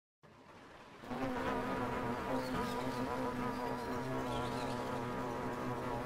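Many honeybees buzzing together in a steady hum, fading in over the first second.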